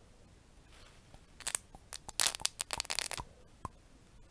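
Close-miked handling of small props: a flurry of sharp crackling clicks and scrapes starting about a second and a half in, then a few single clicks near the end.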